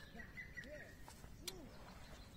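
Quiet outdoor ambience with a few faint, low bird calls and one soft click about halfway through.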